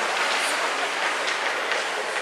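Many ice-skate blades scraping and carving across rink ice as young hockey players skate, a steady hiss with a few sharper scrapes.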